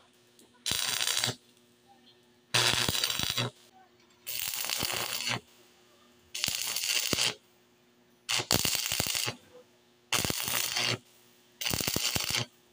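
Stick-welding arc crackling in about seven short bursts, each about a second long and about two seconds apart, with quiet gaps between: short tack welds joining a square steel tube post to the frame.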